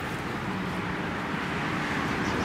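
Road traffic: a passing car's engine and tyre noise, growing slowly louder.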